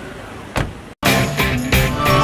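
A car door shuts with a single thump about half a second in. After a brief dead silence, loud music with drum hits and held notes starts at about the halfway point.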